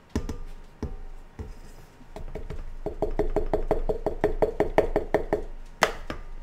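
Plastic flour container knocking against a stand mixer's steel bowl as flour is shaken out. A few separate knocks come first, then a quick even run of taps, about seven a second, for two to three seconds, and one sharp knock near the end.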